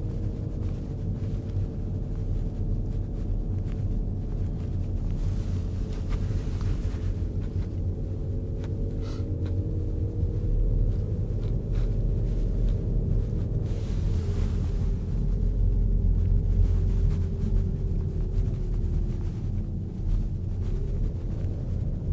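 Car engine running with low road rumble, heard from inside the cabin while driving slowly; the engine note drifts gently up and down in pitch.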